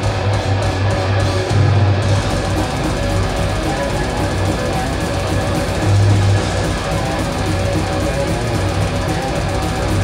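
Death metal band playing live, with loud distorted electric guitars, bass and drum kit in a dense wall of sound and a heavy low end. The sound grows fuller and brighter about two seconds in.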